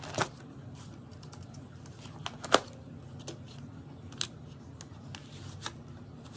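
Plastic binder pages and nail stamping plates being handled: rustling of the pocket sleeves as a page is flipped and plates are slid in, with a few sharp clicks, the loudest about halfway through.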